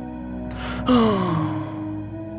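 A cartoon character's sharp breath in, followed by a heavy sigh that falls in pitch, over soft background music.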